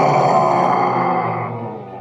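A dragon's roar in a radio play, loud and rough at first and fading out by the end, over a low held musical drone.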